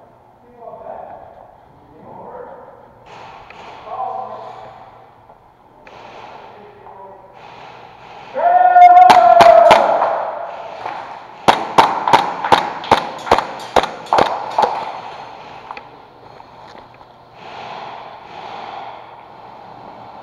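Airsoft guns firing indoors: a string of sharp single shots, about three a second for several seconds. It comes just after a loud, drawn-out shout. Faint talk is heard before and after.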